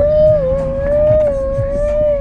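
A long, high, slightly wavering hooting note held without a break, made deliberately by someone in the car, over the low rumble of the car cabin on the road.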